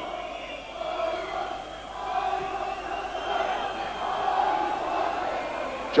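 Football crowd in the stands chanting together, a steady mass of voices.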